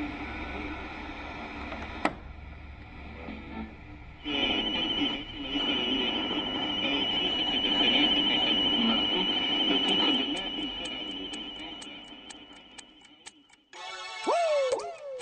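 Played-back recorded audio, voice and music mixed, with a steady high tone joining about four seconds in and a run of quick regular ticks near the end, then fading out and dropping away just before the song comes in.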